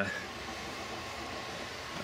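Steady, even hiss of a running microwave-convection oven, heard in a gap between words.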